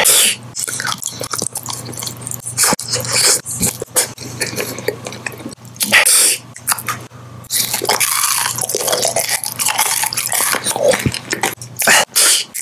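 Close-miked wet chewing and biting of candy, with many sharp sticky clicks and smacks of the mouth, broken by brief pauses.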